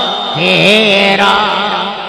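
A man's voice singing a naat, drawing out long notes that waver in pitch. A new phrase starts shortly after the start and fades away near the end.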